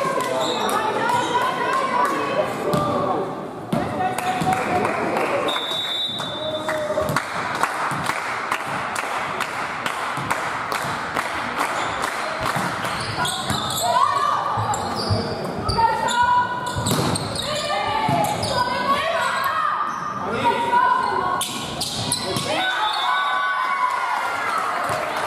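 Volleyball play in a large sports hall: a ball bouncing on the floor and being struck, amid players' and spectators' voices calling out, with the hall's echo.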